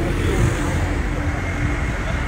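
Busy street traffic with a double-decker bus's engine running close by: a steady low hum over the general road noise.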